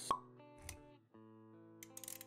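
Logo-intro music with a sharp pop sound effect just after the start, followed by a softer low thud. The music notes break off briefly about halfway through, then resume with a few light clicks near the end.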